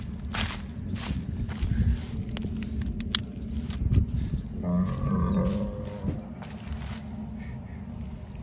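A beef cow moos once, about halfway through, a single low call of about a second and a half. Footsteps crunch through dry corn stalks around it.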